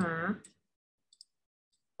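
A woman's voice finishing a short question, then silence broken by two or three faint, brief clicks about a second in.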